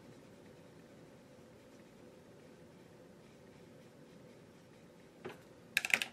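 Near silence: quiet room tone with a faint steady hum, then a few sharp clicks near the end.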